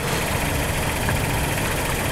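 A car engine idling nearby: a steady low hum under a broad hiss.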